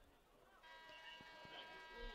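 Faint stadium horn sounding one steady blast for about two seconds, starting about half a second in, signalling the end of the third quarter.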